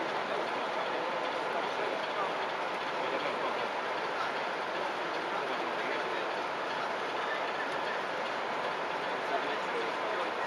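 Steady babble of many voices in a crowded hall, with a model train running along the layout's track.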